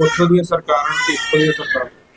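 A person wailing in grief: a high, wavering voice without words.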